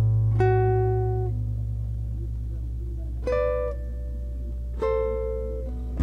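Classical guitar played solo, slowly: a low bass note rings on while a few single melody notes are plucked, each left to fade.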